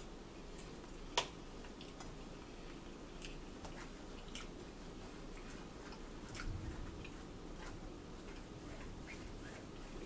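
Quiet eating sounds: chewing and a fork clicking against a plate, with one sharp click about a second in. About six and a half seconds in comes a brief low rumble of thunder.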